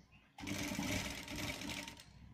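Sewing machine running in a short burst of rapid, even needle strokes, stitching a pocket onto a shirt front; it starts about half a second in and stops just before the end.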